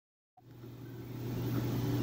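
A steady low hum with a faint hiss, like a fan or running machine. It starts after a brief silence and grows steadily louder.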